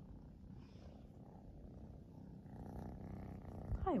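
A kitten purring steadily and quietly.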